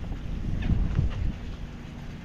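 Wind buffeting the microphone: a gusty low rumble, strongest from about half a second to a second in.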